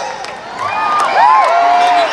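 Arena crowd cheering, with several voices whooping and shouting close by, loudest in the second half.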